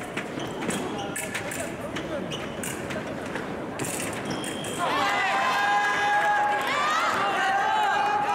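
Fencing hall during a halt between touches: scattered sharp clicks and taps from bouts on nearby pistes over a background of voices. About five seconds in, loud drawn-out shouting voices start and carry on.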